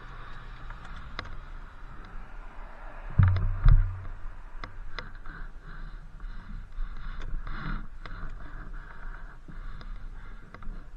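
Inmotion V8 electric unicycle rolling over pavement: a steady low rumble of tyre and wind noise with scattered small clicks and rattles. Two heavy low thumps come a little after three seconds in.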